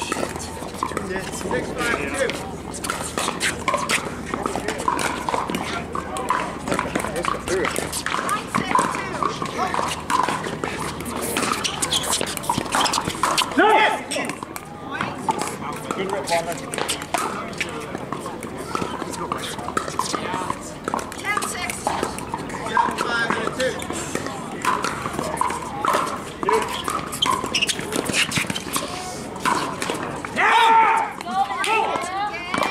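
Indistinct chatter of many players and onlookers, with repeated sharp pops of pickleball paddles hitting plastic balls on the surrounding courts.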